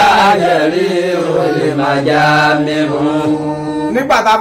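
A man chanting in a low voice, holding long sustained notes with slow rises and falls in pitch.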